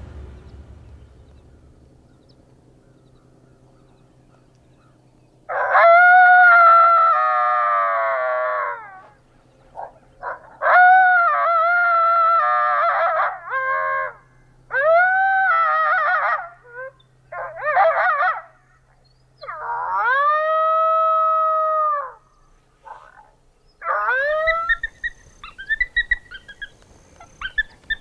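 Coyote howls played through a FOXPRO electronic predator caller's speaker, starting about five seconds in. A long wavering howl comes first, then a string of shorter howls that rise, hold and fall, and near the end a quick jumble of yips.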